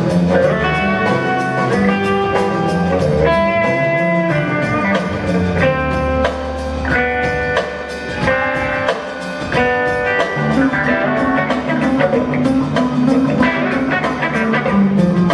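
Live band playing an instrumental passage: semi-hollow electric guitar picking single-note lines over electric bass and drum kit, heard from the audience in a theatre.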